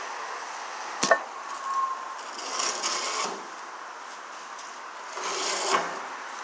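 A single sharp knock with a short ringing tone about a second in, from metal work at a car wheel on an alignment rack. Two spells of rubbing and handling noise follow, the second near the end.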